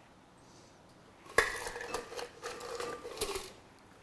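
Stainless cocktail shaker tin being emptied into a glass: a sharp metallic clink about a second and a half in, then a couple of seconds of light clinking and rattling as the last of the drink and small ice chips come out.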